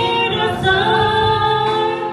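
A woman singing a Christmas worship song with instrumental accompaniment, holding long notes.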